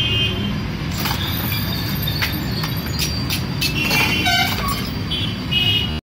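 Steady street traffic rumble with vehicle horns tooting briefly at the start, around two-thirds of the way through, and again near the end, along with a few sharp clicks.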